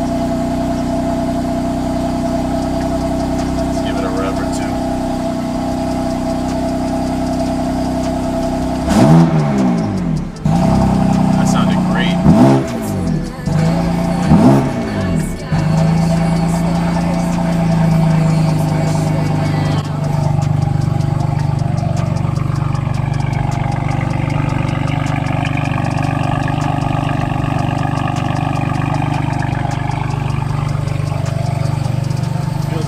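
BMW M4's S55 twin-turbo inline-six idling smoothly, a clean idle after new spark plugs cured a choppy, misfiring one. About nine seconds in the throttle is blipped three times in quick succession, each a short rev that rises and falls, before the engine settles back to a steady idle.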